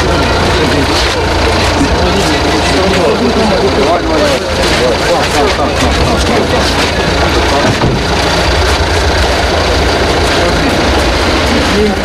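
Several people's voices talking over one another in a crowd, over a steady low vehicle engine rumble.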